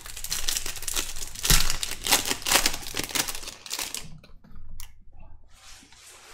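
Foil wrapper of a Bowman's Best baseball card pack being torn open and crinkled by hand, a dense crackling for about four seconds, then fainter, sparser rustling.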